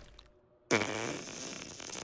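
Cartoon soundtrack sound effect: after a moment of near silence, a sudden pitched sound with a bending tone starts just under a second in and carries on steadily.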